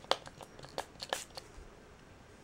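Plastic clicks and crinkles from a pump-spray air and fabric freshener bottle as its cap and plastic clip are taken off and the nozzle is worked: a quick series of about seven short, sharp clicks over a second and a half.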